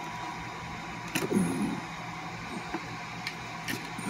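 Subwoofer speaker wires being pulled off an amplifier's terminal block by hand: a few light clicks and rustles of plastic connectors and wire over a steady background hiss, with a brief murmur about a second in.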